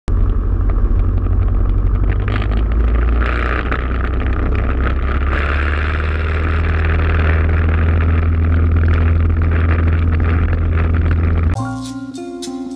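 Piper Cub's engine running with a steady low drone, heard from inside the small cabin with a hiss of air noise over it. Just before the end it cuts off abruptly into plucked-string music.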